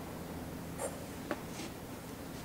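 Quiet room with a steady low hum; go stones handled in the hand give a faint rub a little under a second in and a small sharp click just after.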